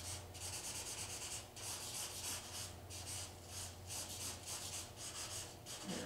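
A drawing pencil rubbing and scratching across paper in quick repeated strokes, each a short hiss with a brief gap between, as lines are sketched and gone over.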